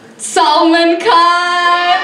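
A woman singing unaccompanied into a microphone: a short hiss, then two long held notes, the second beginning about a second in.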